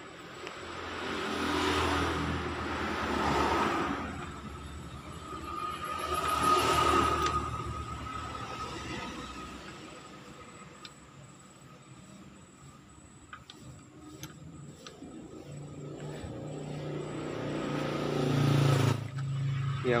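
Motor vehicles passing outside in swells that rise and fade about three times, with a steady engine note in the last swell near the end. In the lulls there are a few faint clicks of metal engine parts being handled.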